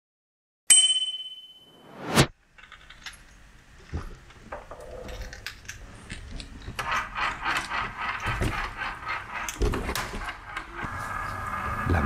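A sharp metallic ding that rings out and fades, then a swelling whoosh that cuts off suddenly. After it come scattered clicks, rattles and jingles as a recumbent trike is handled and wheeled, growing busier about seven seconds in.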